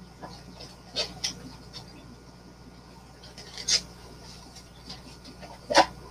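Thin clear plastic takeout containers being handled and pulled apart, giving a few short crackles and clicks of the plastic, the loudest just before the end.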